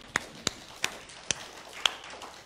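Footsteps on a stage floor: five sharp steps about a third to half a second apart, slowing slightly.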